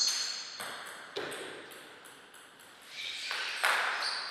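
Table tennis ball hits: a few sharp clicks with a bright, ringing ping. The loudest ringing is at the very start, two lighter clicks follow within the first second and a half, and a further cluster of hits comes near the end.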